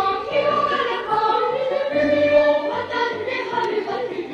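A choir singing, its voices holding long notes and moving from one note to the next.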